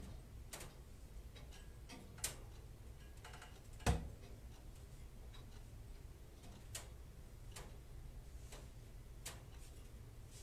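Faint, irregularly spaced clicks and ticks over a low steady hum, the sharpest a single knock about four seconds in.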